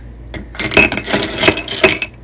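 Raw crystal chunks poured from a scoop into a bowl, clattering against one another and the bowl in a dense run of clicks that starts about half a second in and lasts just over a second.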